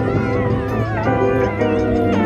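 Background music: sustained chord notes over a steady bass, with a high melody that wavers in pitch.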